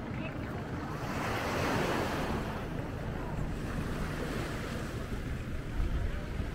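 Small waves breaking on the shore, one wash of surf swelling and fading about one to three seconds in, over wind rumbling on the microphone.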